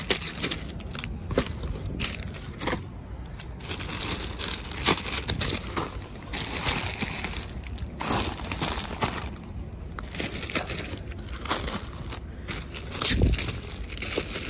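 Plastic snack wrappers, packs of Oreo cookies among them, crinkling and crackling in irregular rustles as the packages are handled and shifted in a heap.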